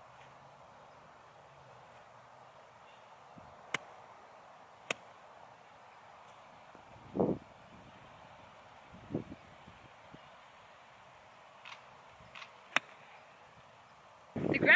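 Quiet outdoor ambience with a few faint sharp clicks, then, about a second before the end, one crisp click of a 58-degree wedge striking a golf ball off hard turf on a short pitch shot.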